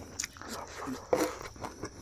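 A person chewing and biting food close to the microphone, with wet mouth sounds and a few short sharp clicks at irregular moments.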